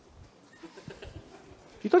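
Faint, irregular footsteps in a quiet room, over low room tone. A man's voice starts again near the end.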